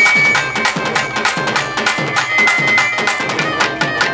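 Instrumental interlude of a Tamil folk-music band: a hand drum plays a fast, even rhythm whose bass strokes slide down in pitch, under a held melody note.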